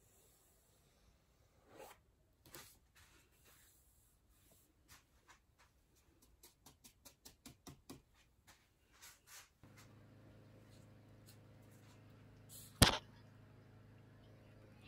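Flat paddle brush dragging across wet acrylic paint on canvas in a series of short, faint strokes that quicken to about three or four a second. Near the end a steady low hum comes in, and a single sharp click is the loudest sound.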